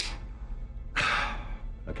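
A man sighing, one long breath out about a second in.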